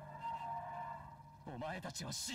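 A quiet, steady drone from the anime's soundtrack, then a character's voice speaking Japanese from about one and a half seconds in.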